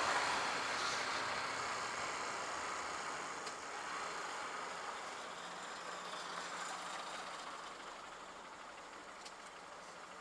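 Wind and road rush from a moving Honda CBF125 motorcycle, with the single-cylinder engine faint beneath it. The noise fades steadily as the bike slows.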